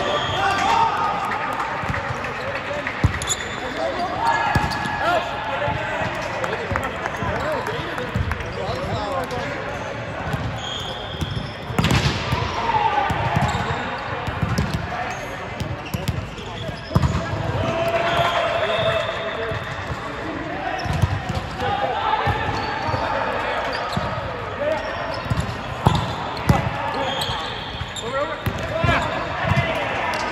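Volleyballs being hit and bouncing on a hard sports-court floor, with repeated dull thumps and a sharp smack about twelve seconds in, echoing in a large hall. Indistinct shouts and chatter from players run underneath.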